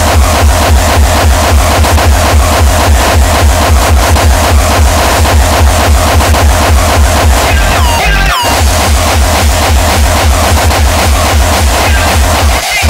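Uptempo hardcore electronic music played loud from a DJ set, driven by a fast, steady, heavy kick drum. Just after eight seconds in the kick drops out briefly under a swooping sweep effect, then comes back in.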